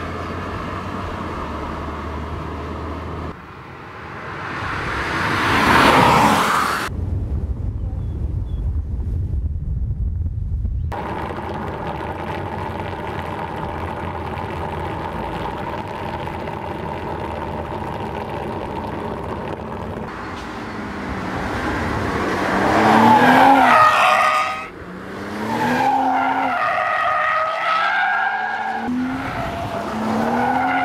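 BMW M440i's turbocharged inline-six engine in a series of track clips: steady running, a pass with the note rising then falling, a few seconds of low rumble, then hard acceleration with the engine note climbing loudly. Near the end, wavering pitched squeals, tyres squealing as the car slides through a corner.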